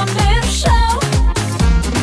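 Lithuanian pop song with a dance beat: a steady kick drum and synths, with a woman singing a line in the first half.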